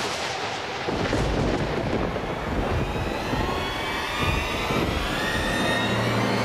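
Dramatic battle sound effect from a mythological TV serial: a loud rushing rumble, like a jet or thunder, that starts suddenly and holds steady, with a whine rising slowly through it as a supernatural energy blast builds.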